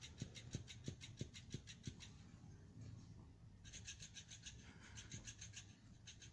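Motorized flopping fish cat toy flapping, heard as faint rhythmic taps about three a second. The taps stop for about a second and a half midway, then start again.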